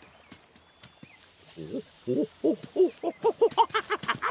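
A cartoon character's voice making a quick run of short, pitched wordless vocal noises. The noises start about halfway in, come about five times a second, and grow faster and higher toward the end.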